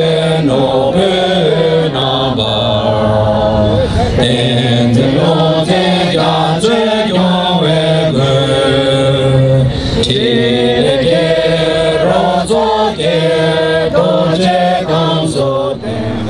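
Voices singing a slow melodic chant, holding notes that step up and down in pitch, loud and without a break.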